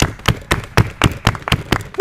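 A rapid run of about ten sharp smacking impacts, roughly five a second, from the action in a backyard wrestling match.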